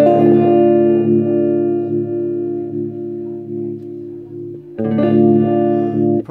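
Electric guitar chord strummed through a breadboarded Lyman V90 phaser clone and left to ring, with a faint slow wavering, then strummed again near the end. The phaser's bias is turned all the way down, so its FETs are hardly working.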